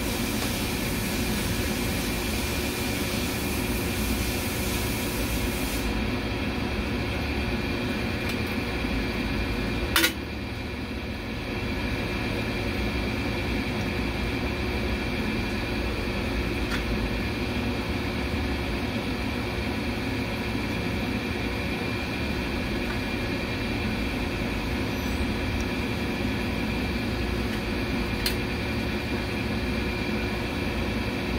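Steady hum of running machinery with several constant tones, and one sharp click about ten seconds in.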